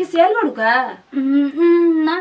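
A woman's voice: a few short vocal sounds, then one long drawn-out vowel held at a steady pitch through the second half.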